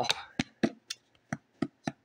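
Lid of a hard plastic seed container being twisted and handled: about six sharp plastic clicks at uneven intervals.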